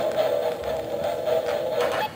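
A steady, wavering electronic suspense tone, held for about two seconds and cutting off suddenly at the end.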